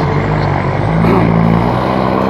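Motor vehicle engine running steadily in traffic, a low even hum.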